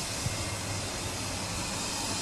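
Steady background hiss with a low hum underneath, and one small click about a quarter second in.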